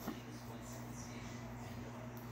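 Quiet room tone with a steady low hum and one soft click just after the start.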